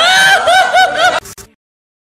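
High-pitched laughter, a quick run of rising-and-falling 'ha' notes about four a second, stopping about a second and a quarter in. A brief crackle follows, then the sound cuts off to silence.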